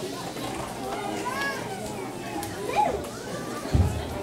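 Young children's voices chattering and calling out over one another, with a brief low thump near the end.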